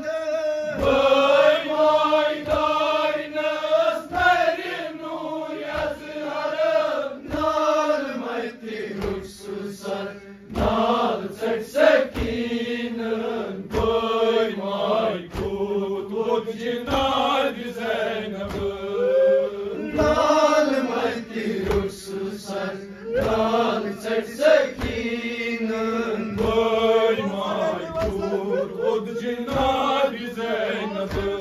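Male voices chanting a nauha, a Shia lament, led by a reciter singing into a microphone. Under the chant, hand-on-chest beating (matam) keeps a steady thud a little faster than once a second.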